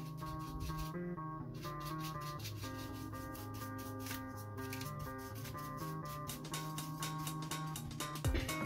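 A stiff bristle brush scrubbing in quick strokes over sand-coated foam during dry brushing, under background music with guitar-like plucked notes.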